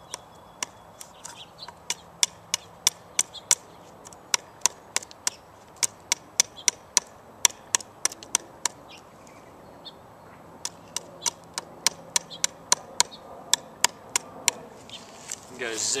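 Spyderco Paramilitary 2 folding knife with an S30V blade hacking into the edge of a wooden board: a quick run of sharp wooden knocks, about three a second, with a short pause a little past the middle.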